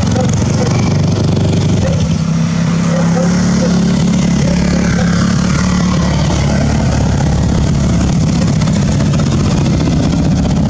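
Off-road motorcycles riding past one after another, their engines running loudly and without a break. The pitch slides up and down as the bikes rev and pass.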